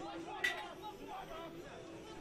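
Faint calls and voices of players on the sand pitch, with one sharp knock about half a second in.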